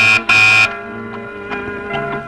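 Electric doorbell buzzer pressed twice in quick succession, a loud, harsh buzz that stops within the first second. Background film music continues underneath.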